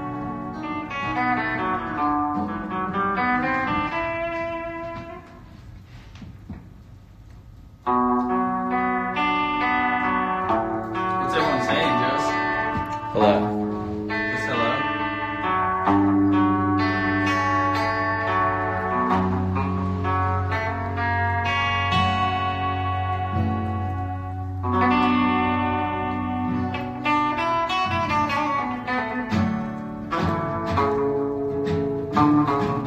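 An acoustic guitar and an electric guitar playing a song together, with a voice singing over them. The playing thins out a few seconds in and comes back fuller about eight seconds in, with held low notes in the middle stretch.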